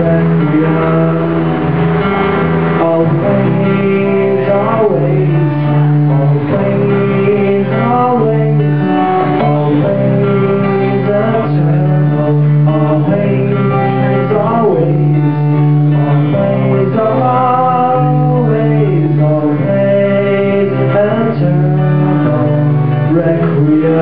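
Solo acoustic guitar played through a steady chord pattern, with a man's voice singing over it in long, gliding notes without clear words.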